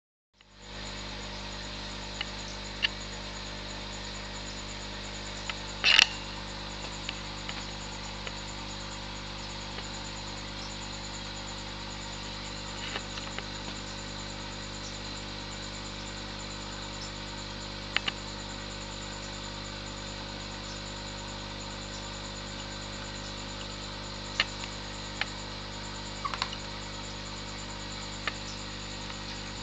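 Steady low hiss and hum of background noise, with a few short, faint clicks scattered through it and one louder click about six seconds in.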